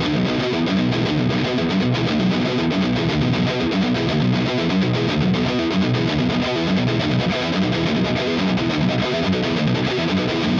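Ernie Ball Music Man JP15 seven-string electric guitar played through a high-gain distorted amp-modeller tone: a fast, continuous riff of open-string pull-offs and picked notes. The open strings are kept tight with palm muting and first-finger dampening behind the fretted notes.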